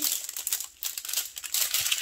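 Plastic packets of diamond-painting drills crinkling and rustling in irregular bursts as they are gathered up and put away.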